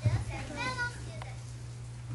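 A child's voice speaking briefly over a steady low hum, with a thump at the very start and a small click about a second in.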